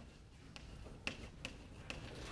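Chalk writing on a blackboard: a handful of faint, sharp clicks as the chalk strikes the board.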